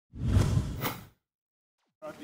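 A whoosh sound effect lasting about a second, with a sharper swish near its end.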